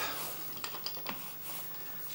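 Faint light clicks and handling noise of a wax-caked sponge paint roller and its wire handle on a metal hotplate, a few small sharp clicks spread through the quiet.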